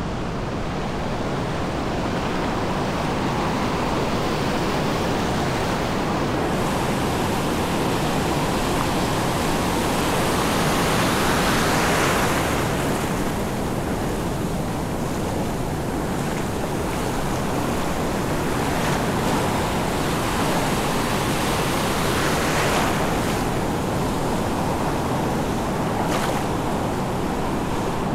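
Ocean surf breaking and foam washing through the shallows, a continuous rush that swells louder about twelve seconds in and again a little past twenty seconds. The sea is not yet calm after a storm swell.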